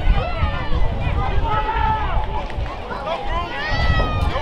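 Several voices shouting and calling out at once, overlapping, from players, coaches and people on the sideline, over a low wind rumble on the microphone.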